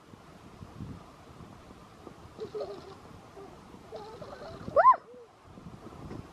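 A small child's short vocal sounds, rising into a brief high squeal just before the end as he is pulled over onto the grass, over faint wind on the microphone.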